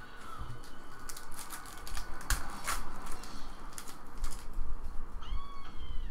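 Trading cards and a foil card-pack wrapper being handled: a run of short crinkles and snaps, the strongest two about two and a half seconds in. Near the end, a brief high pitched tone that holds and then drops.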